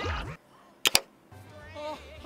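Two sharp clicks close together, about a tenth of a second apart, the loudest sound here, set between stretches of anime dialogue with music underneath.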